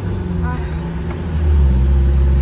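Motorhome engine under load on an uphill climb, heard from inside the cab as a steady low drone. Its pitch sinks over the first second, then about one and a half seconds in it drops to a lower, louder drone. The cooling system is running on plain water after the coolant was lost, and the engine is pulling well again.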